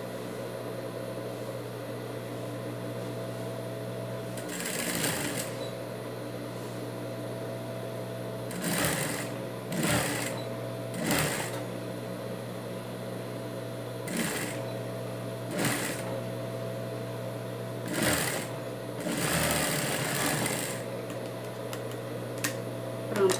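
Industrial straight-stitch sewing machine binding a fabric edge: the motor hums steadily, broken by about eight short runs of stitching, the longest near the end.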